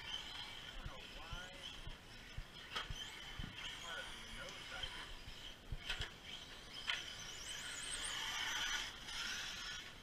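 RC cars running on a dirt track: a steady high whine with rising and falling pitch glides, broken by a few sharp knocks. It grows loudest between about seven and nine seconds in.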